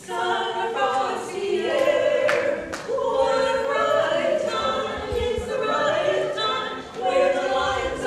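Women's barbershop quartet singing a cappella, four voices in close harmony, with a short break between phrases about seven seconds in.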